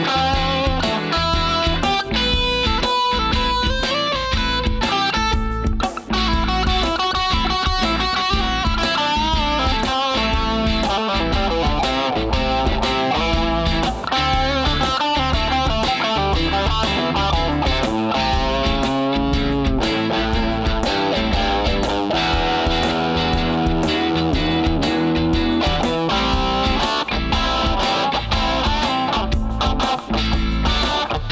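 Kramer electric guitar playing an improvised lead line, mostly pentatonic with string bends, over a looped backing track with a steady beat.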